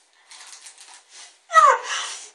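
A girl's soft, breathy laughter in short faint bursts, then a louder vocal sound that falls in pitch near the end.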